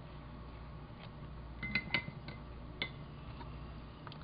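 A few light clicks and taps, about two seconds in and again a second later, over a steady low hum.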